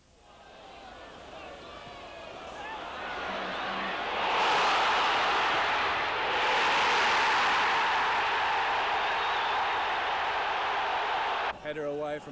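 Football crowd noise from the stands, fading in and swelling to a loud, steady roar about four seconds in, with a brief dip about two seconds later.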